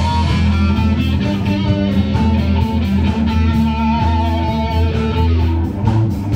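Live rock band playing an instrumental passage: electric guitar holding and bending notes over upright bass and a drum kit with cymbals.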